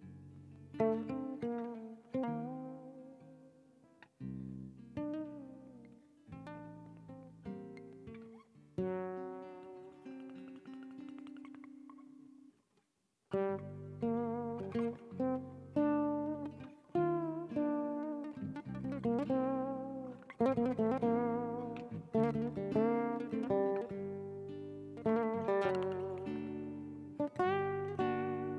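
Duet of an acoustic guitar and a fretless acoustic guitar playing a melody from an Ottoman Turkish composition. The first half has sparse plucked phrases and a held, wavering note. After a brief break about halfway, the playing becomes fuller and busier.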